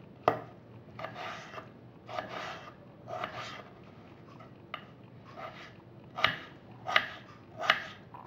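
Kitchen knife cutting a peeled potato into small cubes on a cutting board. A sharp knock comes first, then a run of short slicing strokes about a second apart, ending in sharper knife-on-board chops.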